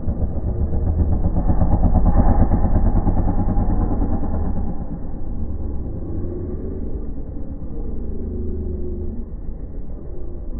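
Dirt bike engine revving hard as the freestyle motocross bike accelerates toward the jump ramp, getting louder to a peak about two to three seconds in. It then drops to a lower, steadier drone while the bike is in the air.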